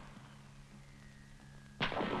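Faint steady low hum of an old film soundtrack with a thin high tone over it, then a short sharp sound just before the end.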